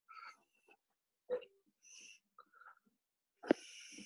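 Faint breathing noises from a small dog held close to a video-call microphone, with a click about a second in and a sharper, louder breath about three and a half seconds in.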